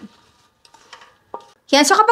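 A few faint clicks and one light, short clink of a utensil against a pan during a near-quiet pause; a woman's voice comes back near the end.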